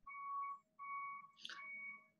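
A faint, steady high-pitched whistle-like tone holding one pitch, cutting out and back in three times, with a brief hiss about one and a half seconds in.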